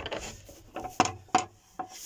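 A few short, sharp knocks and rubbing against wooden cabinetry, the two loudest about a second in.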